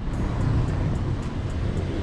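Steady road traffic on a busy street: a continuous low rumble of car engines and tyres.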